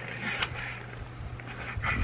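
Die-cast toy fire engine being handled on a table: a light click about half a second in and soft rustling, over a steady low hum.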